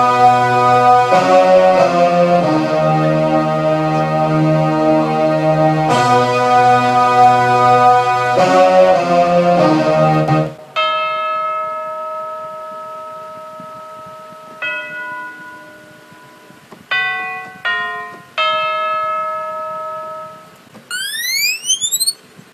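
Synthesizer sounds played on a keyboard: sustained chords that change every few seconds and stop about ten seconds in, then single bell-like notes that ring and fade, a few seconds apart. A rising sweep near the end.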